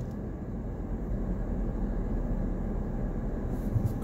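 Steady low rumble of a car's engine and tyres heard inside the cabin while it drives slowly.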